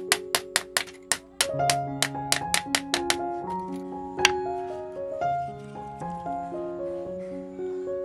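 A hammer tapping a small nail into a teak wood frame in a quick run of light knocks, about five a second, for the first three seconds, with one more knock about four seconds in. Soft piano music plays throughout.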